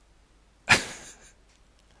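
A man's short, breathy laugh: one sharp burst of breath about two-thirds of a second in, fading quickly.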